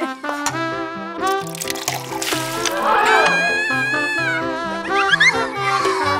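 Playful background music with a steady run of notes, overlaid with cartoon sound effects: a warbling effect about halfway through and quick rising whistle-like glides near the end.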